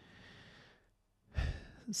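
A man breathing between sentences: a faint breath at first, then a louder breath about a second and a half in, just before he starts speaking again.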